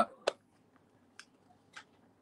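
A few faint, short ticks, about three in two seconds, from a paper sketchbook being handled and held up.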